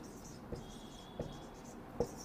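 Marker pen writing on a whiteboard: faint strokes with two light taps and a thin high squeak through the middle.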